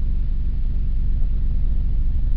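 A steady low rumble of constant background noise, with no other sound standing out.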